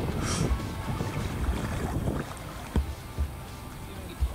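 Water rushing past a kayak on a riffled river, with wind buffeting the microphone in irregular low thumps. It gets a little quieter about halfway through.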